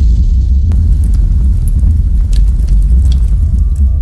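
Cinematic explosion-and-fire sound effect for an animated logo intro: a loud, sustained low rumble with scattered crackles.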